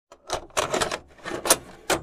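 Rapid mechanical clicking clatter, like keys typing fast, coming in several short bursts: a hacking-themed sound effect.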